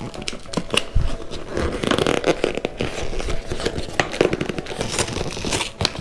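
Hands prying and pulling at the glued flaps of a kraft-paper-covered cardboard box: irregular paper rustling, scraping and small sharp clicks. The flap is hot-glued shut and doesn't give.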